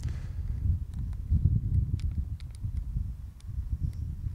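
Wind buffeting the microphone outdoors, an uneven low rumble, with a scatter of faint light clicks from handling the camera's controls.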